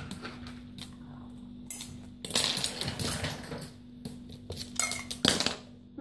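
Clinks and rattles inside a ceramic mug as a small dog pushes its nose into it after food, with a longer rattle a couple of seconds in and a sharp clink near the end.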